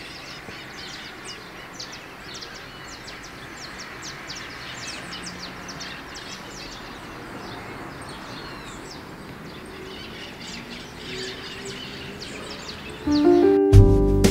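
Many birds chirping in short, irregular calls over a steady outdoor background hiss. About a second before the end, music with piano comes in and is louder than the birds.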